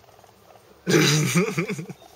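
A black dog vocalizing: one drawn-out, voice-like sound with a pitch that wavers up and down, starting just under a second in and lasting about a second.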